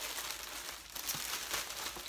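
Clear plastic clothing bag crinkling and rustling as it is handled and lifted out of a cardboard box.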